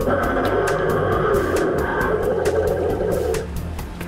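Recorded roar played by a life-size animatronic dinosaur, lasting about three and a half seconds and stopping abruptly, over music with a steady beat.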